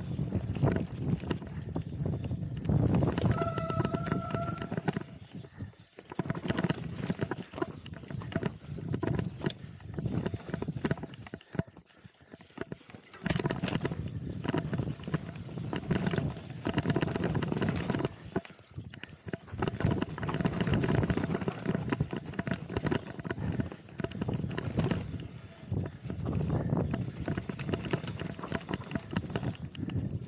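Mountain bike descending a rough dirt trail at speed: a continuous clatter of chain slap and frame rattle as the tyres hit roots and bumps, over wind noise on a helmet camera. It goes briefly quieter twice on smoother stretches.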